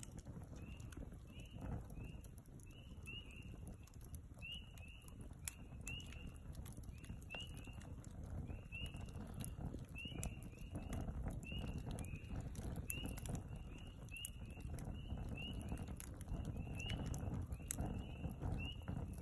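Wood fire burning in a steel fire pit, with frequent sharp crackles and pops. Behind it a small animal calls with a short high chirp, repeated over and over about twice a second.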